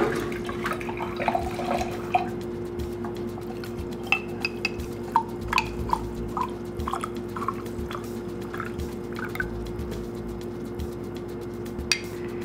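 Water from a reverse osmosis drinking-water faucet running into a glass mason jar, followed by a string of short drips over a steady low hum.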